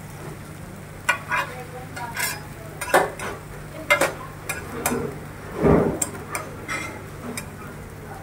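Metal spatula scraping and clinking on a large flat griddle as dosas fry, in short irregular strokes with one heavier knock a little past the middle. A steady low hum runs underneath.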